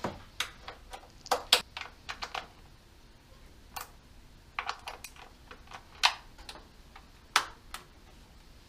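Socket ratchet on a long extension clicking in short, irregular runs while valve cover nuts are run down and tightened by hand, with two sharper clicks near the end.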